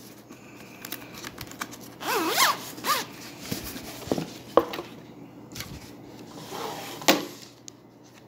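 The zipper of a hard-shell headphone carrying case being pulled open around its edge: an uneven scratchy run broken by a few sharp clicks as the case is handled.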